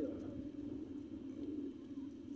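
Steady wind noise on the microphone: a low, even rumble with no distinct events.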